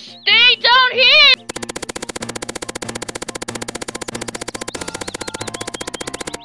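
A high, squeaky, pitched-up voice for about a second and a half. Then a rapid drum-roll sound effect of even hits, about fifteen a second, part of a meme-style edit.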